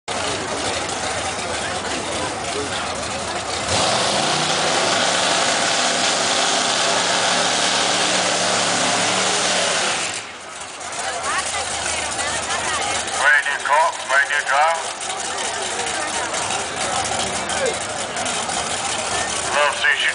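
Drag-racing car doing a burnout at the starting line: its engine is held at high revs with the tyres spinning, getting louder about four seconds in and cutting off suddenly at about ten seconds. Spectators' voices follow.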